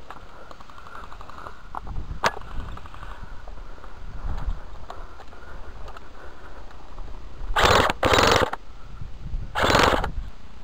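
Airsoft guns firing on full auto in fast rattling bursts, mixed with a sharp click. Three loud bursts of noise come near the end, close to the head-mounted camera.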